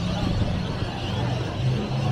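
Street traffic: cars driving through a roundabout, with a continuous low engine hum over road noise.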